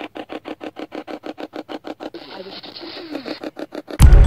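Ghost-box radio sweep from a phone played through a small handheld speaker: rapid, choppy bursts of static at about seven a second. About two seconds in there is a short warbling fragment, which the investigators take for a captured female voice (EVP).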